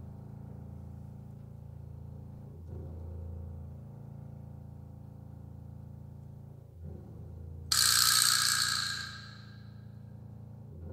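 Symphony orchestra playing avant-garde sonoristic music: a sustained low drone with soft swelling strokes about every four seconds, then a sudden loud, bright crash near the end that dies away over about a second and a half.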